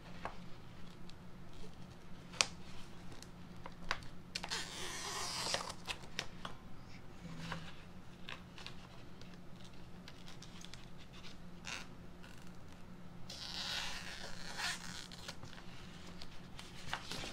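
Scissors snipping through a plastic adhesive silk-screen stencil sheet: scattered sharp snips, with two longer spells of rustling and cutting, about four seconds in and again near the end.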